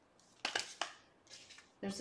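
Tarot cards being handled: two short papery slides about a third of a second apart, then a fainter one. A spoken word starts near the end.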